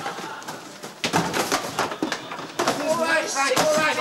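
Several knocks and thumps of cardboard shoe boxes dropping from high shelves onto a man and the floor, irregularly spaced over a couple of seconds, with a man's voice over the last second.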